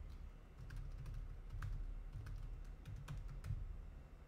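Typing on a computer keyboard: irregular key clicks with dull knocks, picked up by a desktop microphone.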